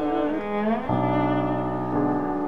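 Classical art song: a soprano's held note ends at the start, and the instrumental accompaniment plays a short interlude, with a gliding line and then a chord held from about a second in.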